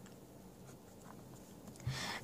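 Pen writing a word on notebook paper, a faint scratching of the tip across the page.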